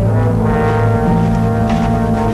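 Background score of low, sustained brass notes held steadily under a dark orchestral chord.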